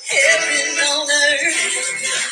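A contemporary worship song recording with a lead vocal over the band, played back through a speaker and picked up by the microphone, so it is not the best sound.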